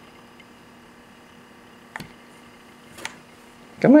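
A child's fingers tapping and fumbling at a plastic wall light switch, giving two small clicks about a second apart.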